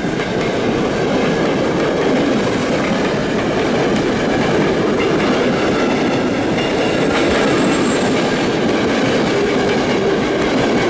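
A long rake of passenger coaches rolling past close by, its wheels clattering over the rail joints in a loud, steady rumble, with a faint high wheel squeal about three-quarters of the way in.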